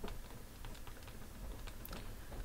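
Faint, irregular ticks and taps of a stylus writing on a tablet screen.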